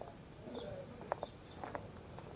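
A few faint, short bird calls over quiet outdoor ambience.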